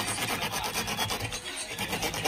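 A metal tool scraping and rubbing against a deployed airbag's crumpled fabric cushion as it is stuffed back into the steering-wheel hub: rapid, repeated scratchy strokes.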